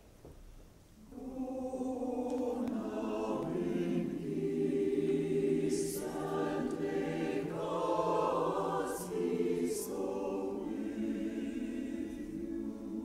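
Church choir singing together, coming in about a second in and holding sustained chords, with a few crisp 's' sounds from the voices.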